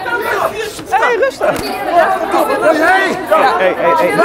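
Several people's voices talking over one another at once: a loud, continuous jumble of overlapping speech in which no single voice stands out.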